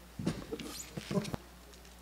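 Microphone handling noise: a quick run of bumps, knocks and scrapes over about a second as a standing microphone is grabbed and tilted on its stand.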